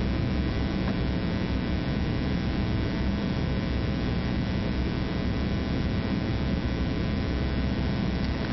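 Steady electrical mains hum with hiss: a constant low buzz with many even overtones.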